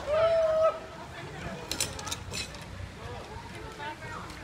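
A person's voice holding a short call about half a second long at the start, then low outdoor background noise with a few brief clicks.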